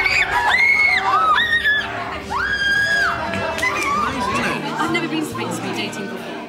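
Several people shrieking and shouting in fright, with short high screams overlapping through the first three seconds. After that the screams give way to confused voices and background music.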